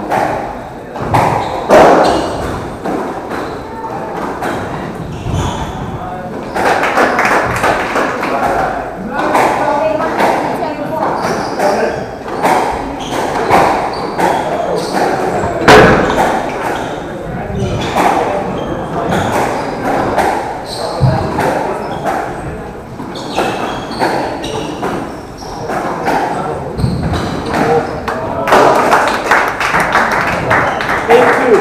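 A squash rally: the rubber ball cracks off the rackets and smacks against the court walls again and again in sharp, irregular hits that echo in the hall. Voices murmur underneath.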